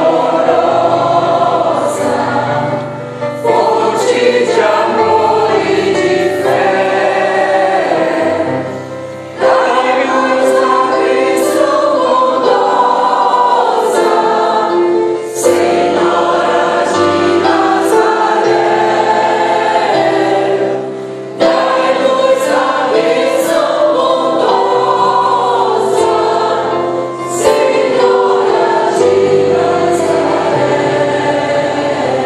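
Mixed choir of men and women singing a hymn in phrases of about six seconds, with short breaks for breath between them, over held low keyboard notes that change with each phrase.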